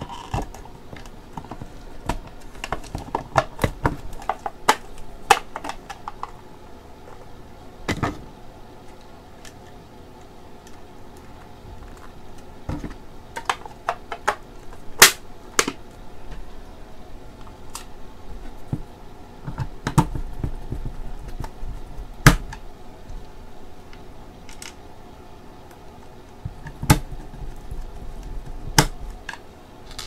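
Irregular plastic clicks and knocks from handling the white plastic casing of a nebulizer compressor as it is worked on by hand, with a few sharper snaps among lighter taps.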